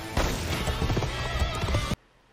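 Film sound effect of a horse whinnying over a clatter of hoofbeats, played for the van charging off like a steed; it cuts off suddenly near the end.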